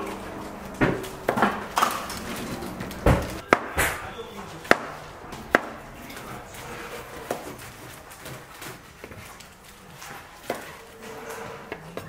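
Kitchen knife chopping cucumber on a cutting board: a run of irregular sharp knocks, thinning out after about six seconds.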